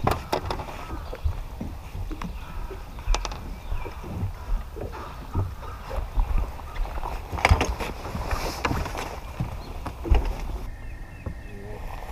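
Wind rumbling on the camera microphone on the deck of a bass boat, with scattered sharp knocks and clunks from handling a landed bass. Near the end the rumble drops to a quieter background.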